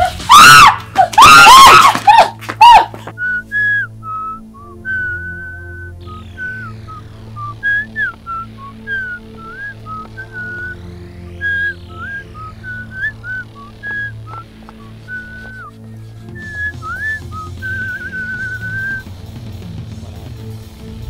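Background film score: a whistle-like melody that glides and steps over a steady low drone. It is preceded by a loud, wavering pitched cry in the first three seconds.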